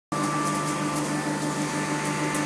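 A steady mechanical hum of several fixed tones over a background hiss, like an air-conditioning unit or an idling engine. One higher tone drops out about halfway through.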